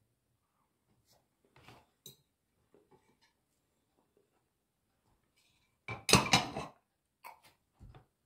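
A ceramic plate and fork clattering as the plate is moved and set down on the table, one loud clatter about six seconds in lasting under a second. A few faint clinks come before it and a couple of light knocks near the end.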